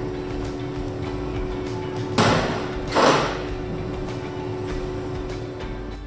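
Two short, loud scraping sounds about a second apart, from glass jars packed with roasted leeks being handled on a metal worktable, over a steady low hum.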